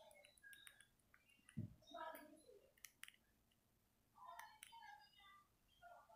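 Near silence in a small room, broken by faint, brief mumbled speech and a few soft clicks.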